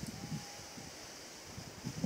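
Light wind blowing over the microphone, a faint uneven rumble and hiss.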